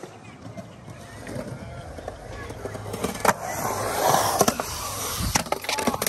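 Skateboard wheels rolling on concrete, the rumble building over a few seconds, with several sharp clacks of the board striking the concrete. The last clacks come as the skater bails and the board comes loose.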